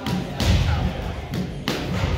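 Boxing-glove punches landing with dull thuds, a few in two seconds, with children's voices in the background.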